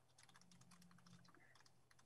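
Near silence, with faint, irregular clicks of typing on a computer keyboard.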